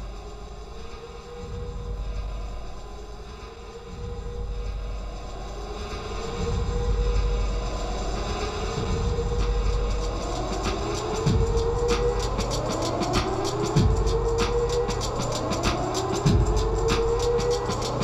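Opening of an acid techno track: a low rumbling bass drone with a synth swoop that rises in pitch and repeats about every two seconds. Quick ticking percussion joins about ten seconds in, with a few downward-swooping bass hits later on.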